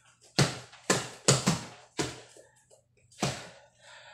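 Bare fists punching an upright mattress: six dull thumps, four in quick irregular succession in the first two seconds and a last one about a second later.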